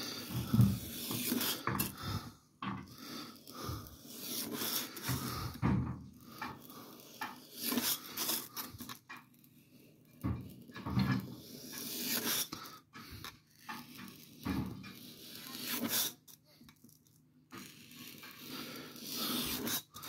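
Snap-off utility knife blade cutting through a sheet of 5 mm XPS foam: a string of scratchy, squeaky cutting strokes that stop and start with short pauses between them.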